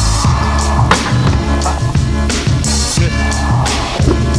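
BMX bike tyres rolling on concrete, with a sharp knock about a second in and a scrape against the ledge a little before three seconds in, under loud music with a steady beat.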